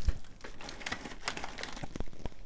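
Faint, scattered small clicks and light rustling, with a soft thump at the start.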